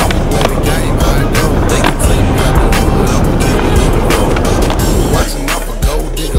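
Skateboard wheels rolling hard on concrete, with several sharp clacks of the board against the ground, over hip hop music. The rolling stops about five seconds in.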